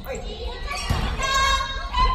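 A volleyball struck once, about a second in, the hit ringing in a large gymnasium, amid players' voices.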